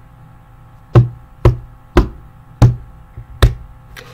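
Five sharp knocks, unevenly spaced about half a second to a second apart, over a faint steady hum.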